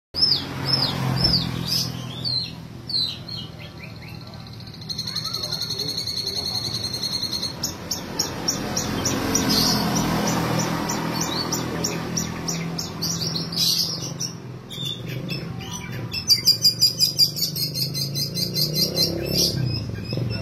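Long-tailed shrike (cendet) singing a varied song made up of mimicked calls: a run of quick falling chirps at first, then a rapid buzzy trill about five seconds in, a stretch of fast repeated notes, and a loud rapid pulsing trill near the end.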